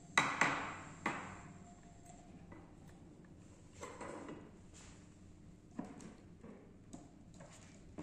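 A few sharp knocks and taps as a glass fluorescent tube and small parts are handled and set down on a wooden table, strongest in the first second, then scattered quieter knocks.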